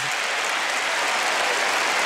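Large audience applauding, a steady wash of many hands clapping that holds at an even level throughout.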